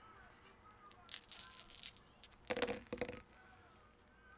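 A handful of small metal polyhedral dice shaken and rolled onto a paper-covered tabletop: about two seconds of rattling clicks, ending in a louder clatter with a brief metallic ring as they land.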